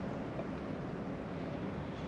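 Steady outdoor background noise with no distinct event: a low, even rumble and hiss, with some wind on the microphone.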